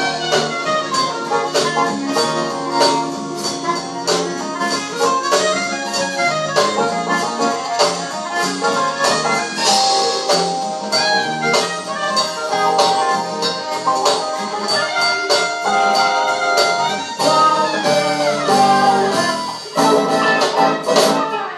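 Live jazz band playing: a soprano saxophone carries the melody over electric guitar and a drum kit with steady beats.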